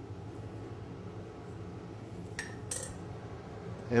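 Low steady room hum, with two short clinks of kitchen utensils about two and a half seconds in, a third of a second apart.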